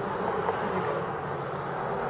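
Steady background hum with no distinct events.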